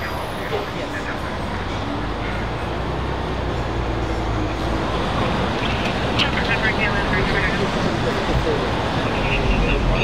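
Steady road traffic noise with a low engine rumble from vehicles on the street, growing slightly louder toward the end, with faint voices in the background.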